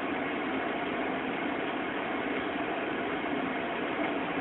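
Steady machine running noise, an even hum-and-hiss with no distinct clicks, beeps or changes.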